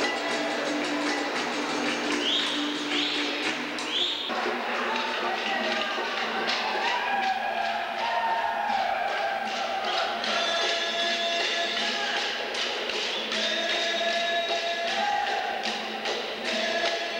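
Live capoeira music: group singing over hand-played percussion, with a steady beat of sharp taps and thumps.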